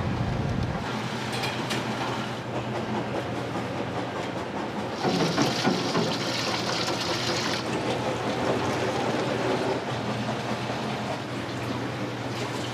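Steady roar of a commercial kitchen's gas burners and extraction, with a constant low hum. Near the start a few light clacks as eggs are set into a pot, and from about five seconds in to about seven and a half seconds, a tap runs water, splashing into a pot of hot water.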